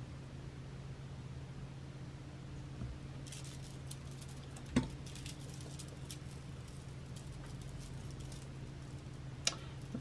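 Light clicks and clinks of small metal jewellery parts: pliers working a jump ring with charms, and beads knocking together as a bracelet is handled. There is a sharper click about five seconds in and another near the end, over a steady low hum.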